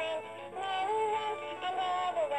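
Baby Tad plush frog toy playing a song: a synthetic-sounding voice singing a melody over music.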